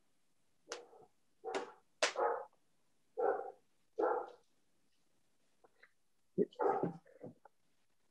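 A dog barking: a run of short barks about a second apart, a pause of a couple of seconds, then a few more close together near the end.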